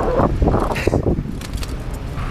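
Bicycle riding along a city street, heard from a camera mounted on the bike: an uneven rumble of road vibration and wind on the microphone, with a few short knocks.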